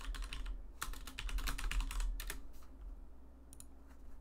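Computer keyboard typing: a quick run of keystrokes for about two seconds, then two more clicks later on.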